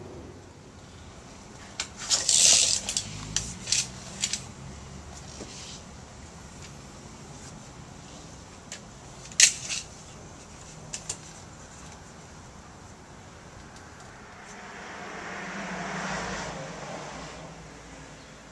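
Clinks and clatter of tools and hardware during an entry door installation: a quick burst of sharp clicks about two seconds in, one loud click about halfway through, and a couple of small ticks after it. Near the end a soft whoosh rises and falls.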